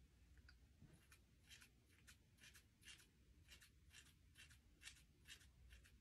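Ordinary household scissors, not hair-cutting shears, snipping through a lock of hair: faint, crisp snips about two a second, some in quick pairs.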